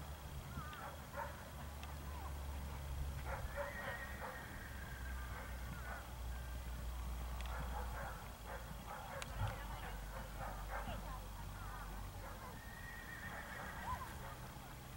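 Horses whinnying, with distant voices and hoofbeats on turf.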